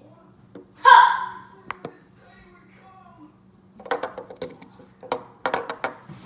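A short vocal sound about a second in, then clusters of sharp clicks and knocks as a hard plastic Minion toy figure is moved and knocked against a tabletop.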